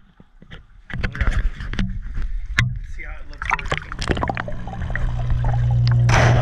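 Action camera in its housing being handled and lowered into a reef aquarium: irregular knocks and scrapes, then from about four seconds a steady low hum, the tank's water pumps heard through the water, growing louder as the camera goes under.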